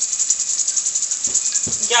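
Sofrito of onion, peppers and tomato sizzling in oil in a pot: a steady crackling hiss.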